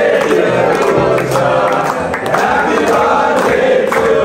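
A group of men singing together while clapping their hands.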